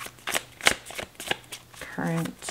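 A deck of tarot cards being shuffled overhand by hand, packets of cards dropping and slapping together in quick, uneven clicks about three times a second.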